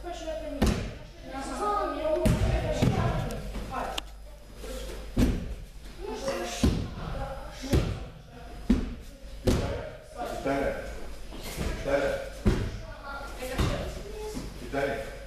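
Bodies and hands slapping down onto padded martial-arts mats during breakfall practice: about ten sharp thuds at irregular intervals, echoing in a large hall, with voices talking between them.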